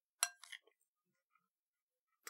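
A spoon clinking against a yogurt dish: one sharp clink with a short ring, then two or three fainter taps.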